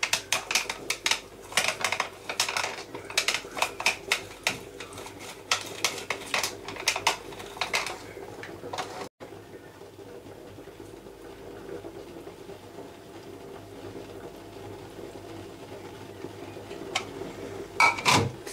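Half a lime being twisted and pressed on a plastic hand citrus juicer: a quick run of short strokes, several a second, for about eight seconds, then only a faint steady hum.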